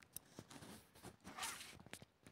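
Rustling and clicking handling noise as the camera is picked up and moved, with a louder brushing swish about one and a half seconds in.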